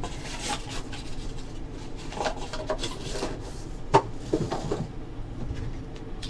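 Hard plastic card holders and a foam-lined card case being handled, stacked and set down on a table: scattered clicks, taps and rubs, with one sharp click about four seconds in.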